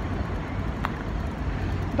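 Outdoor background noise of an urban park: a steady low rumble, with a single faint click just under a second in.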